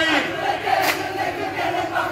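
A group of men singing an Onamkali folk song together in chorus, with a single sharp hand clap about a second in.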